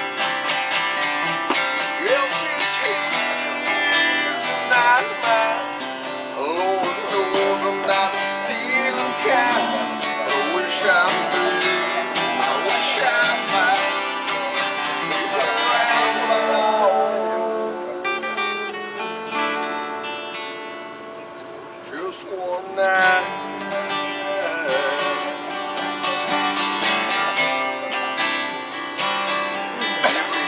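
A song played live on acoustic guitar, strummed and picked, with a singing voice over it. It drops quieter for a couple of seconds about two-thirds of the way through.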